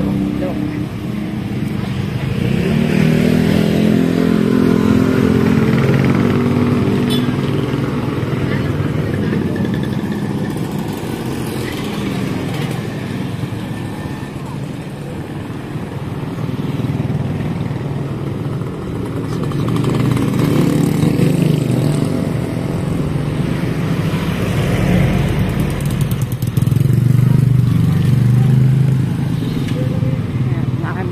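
Street traffic with small motorcycle engines passing. They grow louder twice as vehicles go by, a few seconds in and again near the end.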